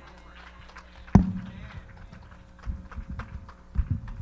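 A few dull thumps and knocks. A sharp one about a second in is the loudest, with quieter knocks near the end.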